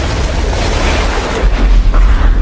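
Channel-intro sound effect: a loud, deep explosion-like rumble with a rushing hiss over it, holding on without a break.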